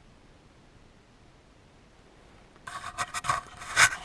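Faint room tone, then from about two-thirds of the way in a run of loud scraping and rubbing strokes right at the microphone, the loudest just before the end: handling noise from the worn camera being moved.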